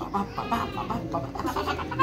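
A little girl laughing in a quick run of short, evenly spaced bursts while her leg is being stretched.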